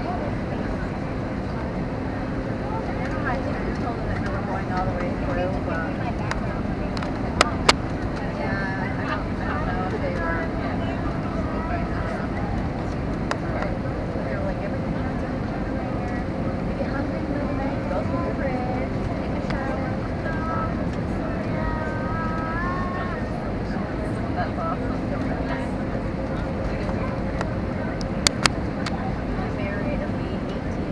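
Steady cabin noise of an Airbus A321 airliner descending on approach: a constant rumble of engines and airflow, with voices in the cabin. Two quick pairs of sharp clicks sound, about seven seconds in and near the end.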